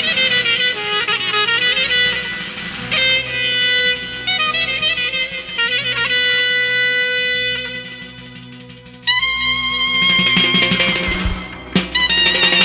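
Clarinet playing a fast, ornamented Azerbaijani folk melody full of trills and slides, over a hand-beaten double-headed nagara drum. The music drops softer about eight seconds in, then the clarinet comes in with a loud, long held high note about nine seconds in.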